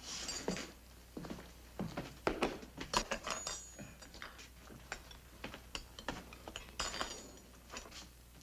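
Crockery and cutlery clattering on a wooden counter: a run of short knocks and clinks as a bowl and spoon are set down, a few of them ringing briefly.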